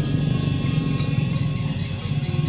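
Background music with sustained tones over a steady low throb, and a run of high, repeated chirps like crickets above it.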